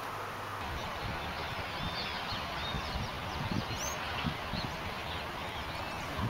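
Outdoor field ambience: a steady hiss with an uneven low rumble, and birds chirping faintly through the middle.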